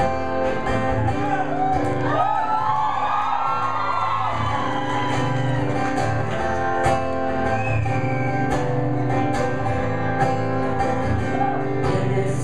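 Acoustic guitar strummed in a steady rhythm during an instrumental break in a live solo song, with a voice singing a short wordless gliding line over it a few seconds in.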